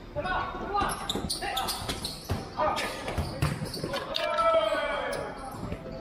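Futsal players calling out to each other, with one long shout about four seconds in, over short thuds of the ball being kicked and bouncing on the court.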